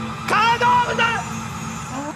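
A man's shouted call, one loud cry about a second long, over a steady low hum.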